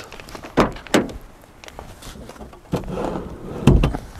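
Handling noises from a Toyota Aygo's body: a couple of light knocks, then a heavy low thump near the end as the rear side door is worked open.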